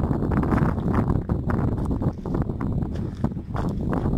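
Wind buffeting the microphone in gusts, with irregular crunching knocks of footsteps on gravel.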